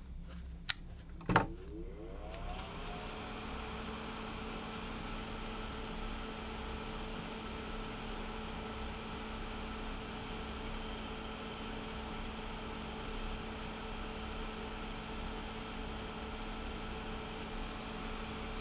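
Two sharp clicks, the second as a small bench fan, the soldering fume extractor, is switched on; its whir rises in pitch as the motor spins up, then it runs steadily with a low hum.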